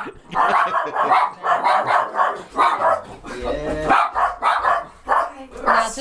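Dogs barking over and over in quick runs of short barks, with voices in between.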